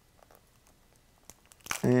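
Faint ticks and crinkles of a toothpick prying at the end flap of a small cardboard toy-car box, with light cellophane handling.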